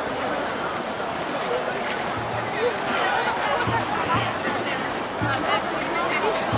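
Onlookers chattering over background music, with low bass notes coming in about two seconds in.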